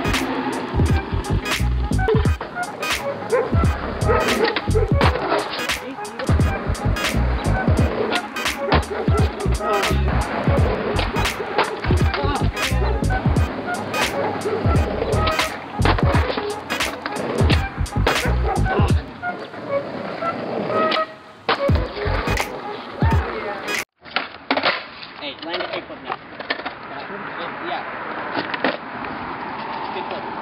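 Skateboard wheels rolling on concrete, with many sharp clacks of the board popping and landing.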